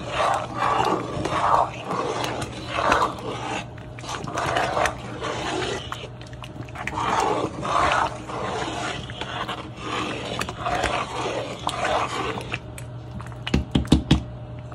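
Thick sweet pongal of rice, mung dal and dates bubbling and plopping in a pot as it is stirred with a metal spoon, over a steady low hum. A few clinks of the spoon against the pot come near the end.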